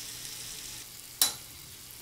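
Faint steady hiss of water running at a bathroom sink, fading about a second in, then a single sharp clink just after.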